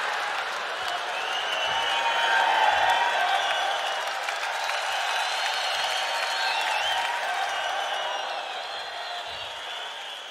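Large theatre audience applauding and laughing. The applause swells a couple of seconds in, then slowly fades toward the end.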